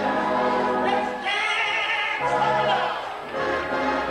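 Gospel singing: a woman's lead voice on long, wavering held notes, with a choir singing along.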